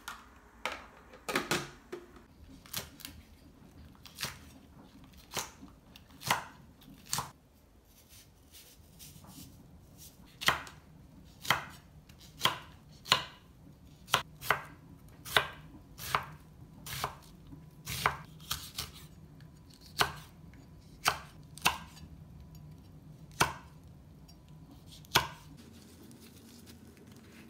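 Santoku knife slicing green onions on a wooden cutting board: single sharp chops, roughly one a second, at an unhurried, slightly uneven pace.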